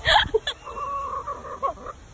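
Hen clucking, with one drawn-out steady call of about a second in the middle and short clucks near the end; a brief loud burst of sound right at the start.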